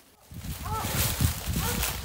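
Footsteps crunching through dry leaf litter, starting about a third of a second in and going on steadily.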